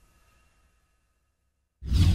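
Near silence, then near the end a sudden loud cinematic hit sound effect for the logo intro: a deep boom with a bright hiss on top.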